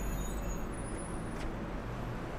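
Steady low rumble and hiss of outdoor background noise, traffic-like, with no distinct events.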